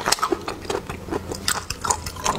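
Close-miked eating of spicy river snails in chili broth: wet chewing and mouth sounds with a dense run of irregular sharp clicks from the snail shells.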